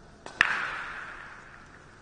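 Two hard clacks about a sixth of a second apart. The second is much louder and rings out, fading over about a second in a reverberant hall.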